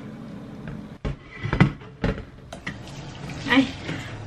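A few sharp knocks and clatters of kitchenware being handled and set down on a counter, spaced about half a second apart, followed near the end by a short exclamation, "Ay!"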